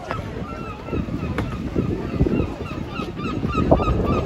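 Waterfront crowd chatter with wind on the microphone, and gulls calling over it in many short repeated cries.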